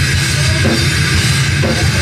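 Hard rock band playing live, loud and steady: distorted electric guitars and bass over a pounding drum kit with cymbals.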